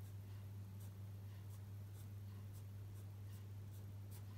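Black Sharpie marker tip drawing short strokes on paper, a scatter of faint scratches, over a steady low hum.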